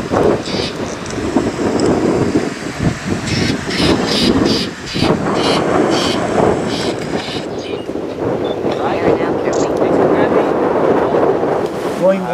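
Strong wind buffeting the microphone, a loud, uneven rumble that rises and falls with the gusts. For the first seven seconds or so it carries a run of short high sounds, a few to the second.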